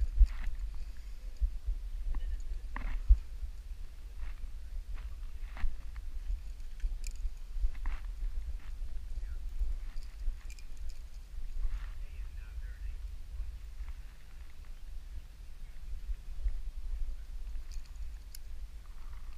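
Low rumble of wind on a helmet-mounted camera's microphone. Over it come scattered short scuffs and clicks as a climber's hands and gear move on sandstone, and a few brief vocal sounds from the climber.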